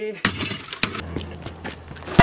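A cathode-ray tube TV's glass screen cracking and breaking: a noisy crash about a quarter second in, then a single sharp crack just before the first second.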